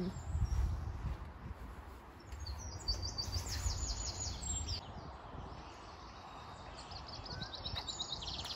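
A small songbird singing fast runs of high, rapidly repeated chirps, about two and a half seconds in and again near the end, over a low rumble of wind or handling noise on the microphone.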